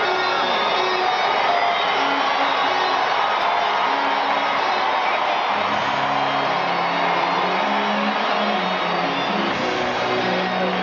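Music over the stadium PA, with the hubbub of a ballpark crowd under it; lower notes come in about halfway through.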